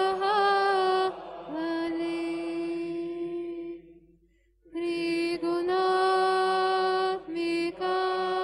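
Devotional mantra chanting: long notes held at one steady pitch over a low drone, with a short pause a little past the middle.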